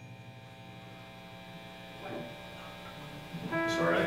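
Steady electrical hum and lingering tones from the band's amplified rig at rest, with a single instrument note starting near the end.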